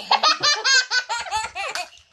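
A child laughing: a fast run of short, high-pitched laugh pulses that fades near the end.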